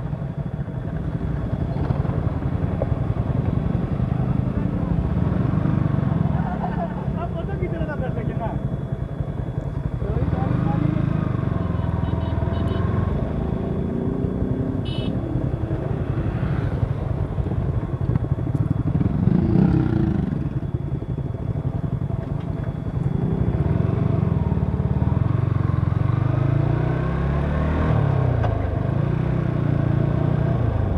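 Yamaha sportbike engine running on board in second gear at low road speed, with a steady low rumble that swells and eases a little as the throttle changes.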